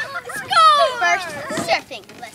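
Children's voices outdoors, with one child's loud high-pitched yell that slides down in pitch about half a second in and lasts about a second.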